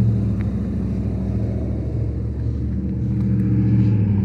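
A motor vehicle's engine running steadily close by, a low hum that eases a little in the middle and swells again near the end.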